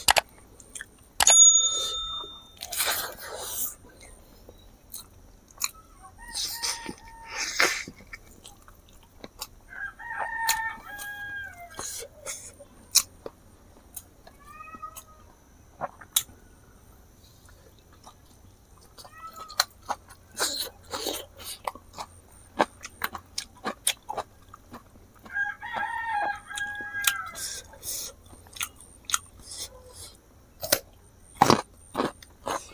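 Close-up eating sounds: chewing, lip-smacking and sharp mouth clicks as rice and buffalo meat curry are eaten by hand. A rooster crows in the background about ten seconds in and again near the end.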